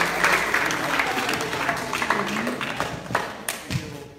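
Audience applauding, the clapping thinning out and dying away with a few last separate claps near the end.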